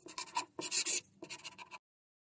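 Pen writing, scratching across the writing surface in about three quick strokes that stop shortly before the end.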